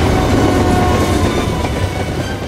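Freight train rolling past, a loud low rumble of wheels on the rails with a few faint steady tones above it.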